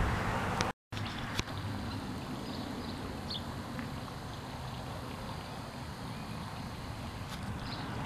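Steady outdoor background noise with a few faint, short high chirps of small birds. The sound drops out completely for a moment just under a second in.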